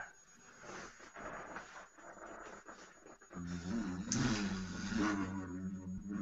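Toy lightsaber's electronic hum, starting about halfway through and wavering in pitch as the blade is moved, after a few seconds of faint rustling.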